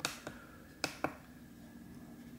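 Short, sharp clicks of buttons being pressed on a Neewer F200 field monitor to step through its menus: one at the very start, then two close together around a second in.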